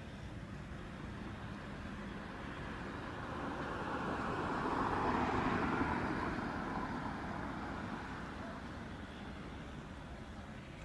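Jet airliner engine noise that swells to a peak about five seconds in and then fades, as an aircraft passes.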